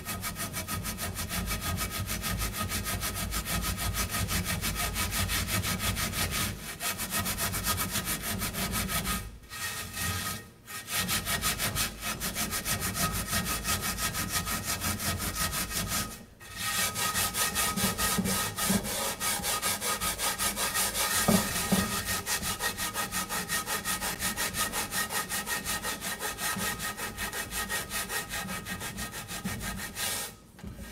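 Coarse salt being scrubbed around a cast iron skillet with the green scouring pad of a sponge: a steady, gritty rasping of rapid back-and-forth strokes, broken by a few brief pauses.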